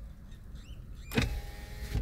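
A car's electric power window motor runs with a steady whine for just under a second, starting about a second in, and stops with a thunk near the end.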